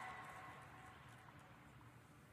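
Near silence: the last of a PA announcement dies away in a large arena, leaving faint room hum.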